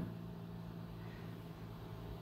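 Quiet room tone: a steady low hum under a faint even hiss, with nothing else happening.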